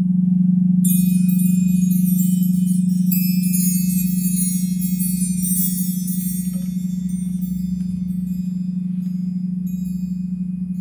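A crystal singing bowl holds one steady low tone. About a second in, a set of chimes is set ringing over it, many high tones at once, and they slowly die away.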